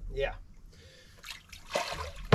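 Faint splashing and trickling of shallow water around a person standing in it, with a short cluster of small splashes near the end.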